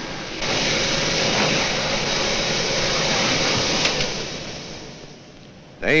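Steady whirring rush of air from a motor-driven vacuum or blower unit. It starts abruptly about half a second in and fades away over the last two seconds.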